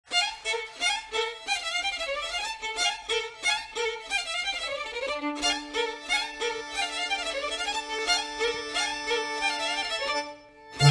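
Transylvanian folk band playing a fast hărțag (es-tam) dance tune live, the violins leading over accordion, clarinet, taragot, braci and double bass. Quick running notes on an even pulse, then about halfway through long held notes sound beneath the melody.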